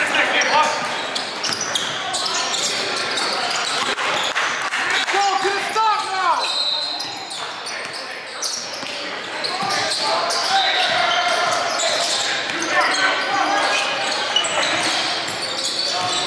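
Live basketball game sound in a gym: a basketball dribbling on the hardwood floor with indistinct calls from players and spectators, all echoing in the large hall.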